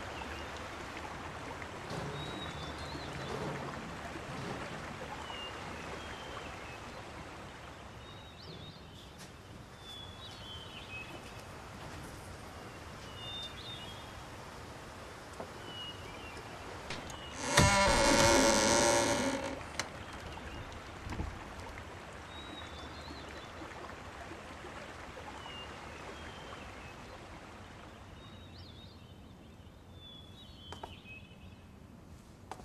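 Quiet outdoor ambience with faint, scattered bird chirps. A little past halfway, a loud call of steady pitch lasts about two seconds and is the loudest sound.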